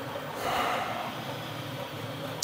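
A person's breath, a long exhale that swells about half a second in and fades, over steady room noise.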